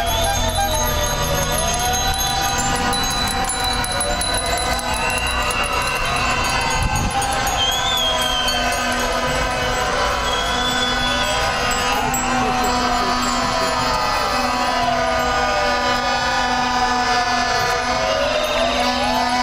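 Sirens wailing in slow, overlapping rising and falling glides over a steady din of street and crowd noise.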